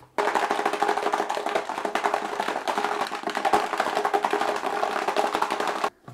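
Metal fin roller rattling inside a plastic bottle as the bottle is shaken hard to clean the roller in a little acetone: a fast, continuous clatter of small knocks that stops abruptly near the end.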